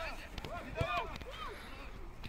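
Players' shouts and calls across an outdoor football pitch: short, rising-and-falling cries from several voices at a distance, with a sharp thud near the middle.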